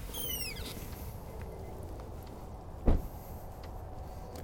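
An SUV's door shut with a single loud thump about three seconds in, over a steady low outdoor rumble. A brief high whistle falls in pitch right at the start.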